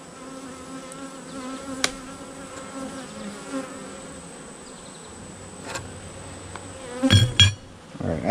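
Honeybees buzzing around an open hive: a steady hum of many wingbeats, with sharp clicks of a metal hive tool against the wooden frames twice. There is a brief louder burst near the end.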